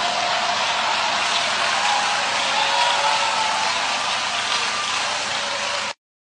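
A large church congregation cheering loudly and steadily, with a few voices rising through the crowd noise; it cuts off suddenly near the end.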